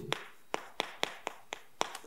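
Chalk tapping on a chalkboard as Korean characters are written stroke by stroke: an uneven run of about nine short, sharp taps.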